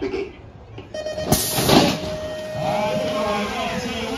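BMX start gate sequence: a steady electronic start tone sounds for about two seconds, and just after it begins the gate drops with a loud bang. Voices shout near the end as the riders set off.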